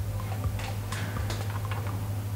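A series of irregular light clicks and ticks, starting about half a second in, over a steady low hum.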